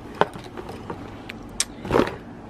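Handling noise from a leather waist bag being moved in its box: a few light clicks from its metal strap hardware and rustling of packaging, with a louder rustle near the end.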